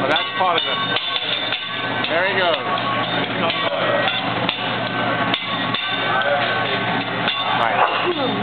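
Metal spatula and knife clacking against each other and the steel teppanyaki griddle: a run of sharp strikes, about two a second.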